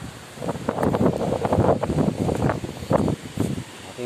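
Gusty wind buffeting the phone's microphone in loud, irregular gusts, starting about half a second in and dropping off shortly before the end.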